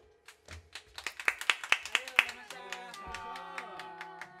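Hand clapping in a quick, even rhythm of about five claps a second, right after the band's final chord has died away. About halfway through, recorded music with a saxophone melody and bass line comes in under the claps.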